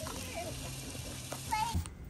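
Seasoned tri-tip steak sizzling steadily on a hot Blackstone flat-top griddle, over a faint low hum; the sound cuts off abruptly just before the end.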